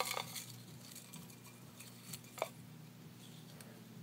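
Faint rustle of folded paper slips being stirred by hand inside a round metal tin, with a few light clicks at the start and a single sharp click about two and a half seconds in.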